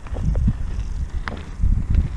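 Wind buffeting a GoPro action camera's microphone: a low rumble that comes and goes in uneven gusts.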